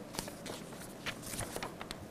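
Faint scattered small clicks and light rustles, more frequent in the second second: handling noise from a person moving at the board with papers in hand.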